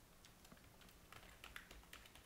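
Faint computer keyboard typing: scattered soft key clicks, coming more often in the second half.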